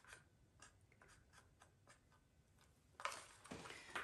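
Faint scraping and light ticking of a stick against the inside of a paper cup as the last acrylic paint is scraped out, then a louder rustling noise about three seconds in.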